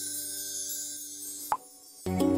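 Soft background music, then, about one and a half seconds in, a single short rising pop from a smartphone messaging app, the chime of a chat message going out.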